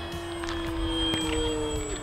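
Electric motor and propeller of an Arrows Trekker RC trainer plane in flight, a steady hum that slowly drops in pitch.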